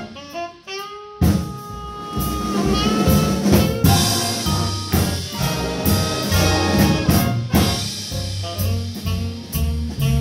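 Jazz big band playing, with saxophones, trumpets and trombones over a drum kit. After a brief thinner pickup, the full band comes in about a second in.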